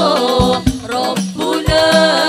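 A group of women singing sholawat together into microphones, the melody gliding over a steady low accompaniment, with a few sharp percussion beats underneath.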